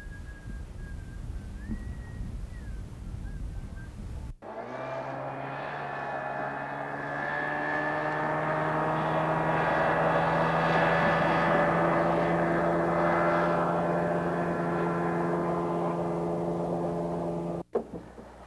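Wind rumbling on the microphone for about four seconds, with a faint thin wavering tone. Then, after an abrupt cut, an outboard motor runs steadily as the boat travels over open water, growing louder, until it cuts off just before the end.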